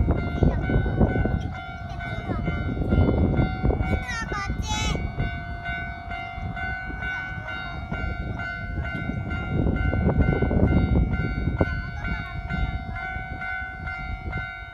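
Japanese level crossing warning bell ringing in a fast, steady repeating pattern as the crossing lights flash, over a continuous low rumble.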